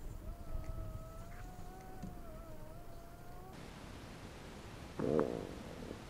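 A fart: one short, loud buzzing blast about five seconds in. Earlier, a faint steady tone wavers slightly in pitch for about three seconds.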